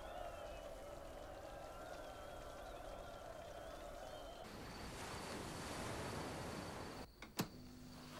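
Faint, steady sustained tones with a slight waver, then a soft swelling hiss that stops abruptly about seven seconds in. Two sharp clicks follow near the end, as a record player's tonearm is handled.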